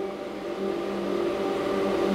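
A steady machine hum made of several fixed pitched tones, slowly growing a little louder.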